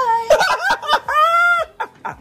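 A high-pitched playful voice: short exclamations, then a long held cry that rises and falls about halfway through, amid laughter.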